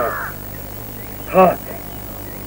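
Crows cawing in the background, with a spoken word at the very start and a short voice sound about a second and a half in.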